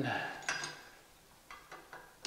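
Light clicks of screw hardware and a screwdriver against the thin aluminium loop and its capacitor plate. There is one sharp click about half a second in, then three quick ones near the end.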